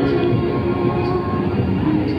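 Loud, continuous fairground din: music playing over the steady mechanical running of the rides.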